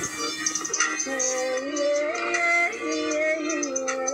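Gospel backing music with a steady beat of high ticks; a smooth, held melody line that glides between notes comes in about a second in, without words.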